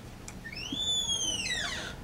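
A single high-pitched squeak that rises and then falls in pitch, starting about half a second in and lasting a little over a second.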